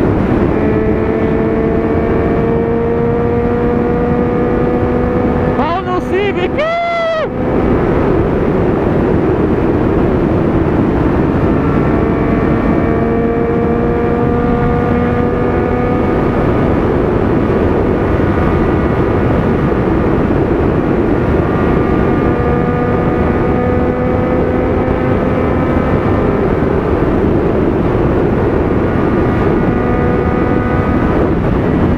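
Triumph Street Triple's three-cylinder engine pulling at highway speed, its note climbing slowly, with heavy wind noise on the camera. About six seconds in, the note breaks and sweeps briefly up and down, then the engine pulls on steadily.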